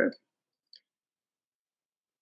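A woman's voice trails off, then near-total silence on a video-call line, broken by one faint short click under a second in.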